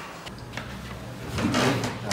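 A wooden bench knocking and creaking as a man sits down on it, with a man's voice starting near the end.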